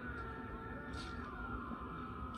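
Soundtrack of a TV drama's sword-fight scene: a steady, high, held tone over a constant low rumble.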